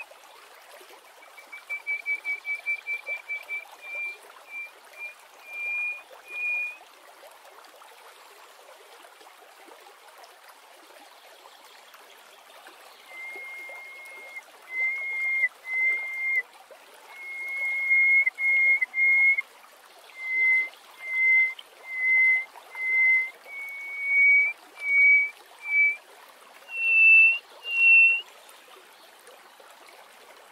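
Greater hoopoe-lark singing piping whistles: a quick run of short notes that climbs slightly, a few longer notes, then after a pause a long series of drawn-out whistles that rise in pitch toward the end. A steady hiss lies under the song.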